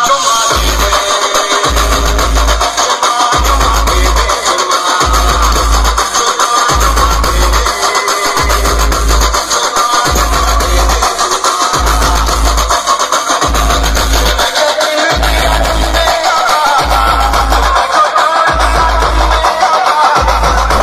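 Loud music played through a truck-mounted DJ speaker stack. Deep bass notes come in long, heavy blocks about every one and a half seconds.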